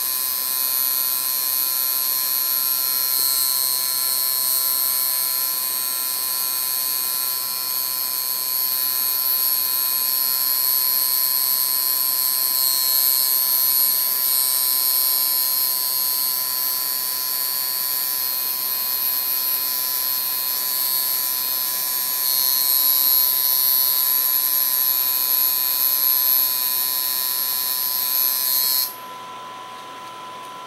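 Coil tattoo machine buzzing steadily while running on skin. It cuts off suddenly about a second before the end.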